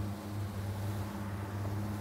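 Boat's outboard motor running steadily in gear at slow trolling speed, a low even hum, with the rush of water from the wake.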